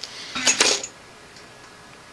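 A short clink and rustle of a plastic bag of small metal line 20 and line 24 snaps being set down, about half a second in.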